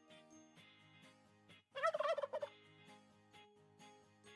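A single turkey gobble, a short quavering call about two seconds in, over quiet background music.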